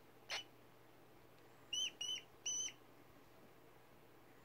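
Baby pet rat, two months old, squeaking: one brief sharp squeak, then three clear, high-pitched squeaks in quick succession about a second and a half later.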